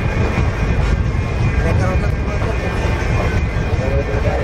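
Running noise of a moving express passenger train heard from an open coach doorway: a steady, loud rumble with rushing air.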